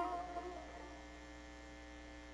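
A plucked tar note dies away within the first second, leaving a faint steady held tone over a low electrical mains hum.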